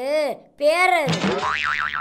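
Cartoon 'boing' comedy sound effect, its pitch wobbling rapidly up and down in the second half.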